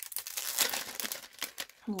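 Thin clear plastic sleeve crinkling as it is handled, a dense continuous crackle.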